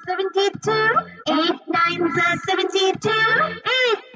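Children's educational song: sung voices over music, chanting the multiplication table of eight in short syllables.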